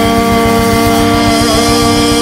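Instrumental band passage: a long held note rings over a pulsing bass and drum rhythm.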